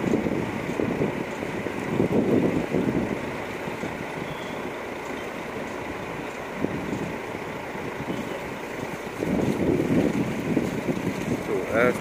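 Coach engines running steadily in a bus yard, with people talking nearby at times.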